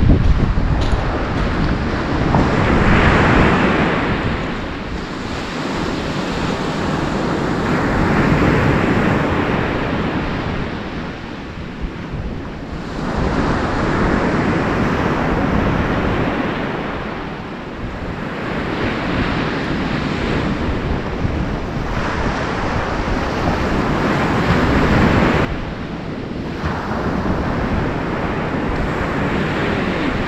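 Surf breaking on a shingle beach, swelling and fading about every five or six seconds, with wind buffeting the microphone.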